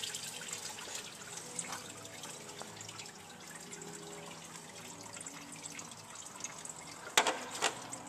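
Residual engine coolant trickling and dripping from the open water-pump mounting of a 3.3L V6 into a drain pan, a steady faint trickle, with one sharp click about seven seconds in.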